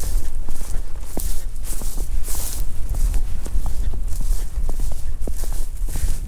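Footsteps crunching and swishing through tall dry grass and a thin layer of snow at a steady walking pace, over a constant low rumble.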